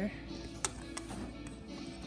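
Background music with steady tones under light clicks of a small plastic toy against a plastic toy garage. The sharpest click comes about two-thirds of a second in.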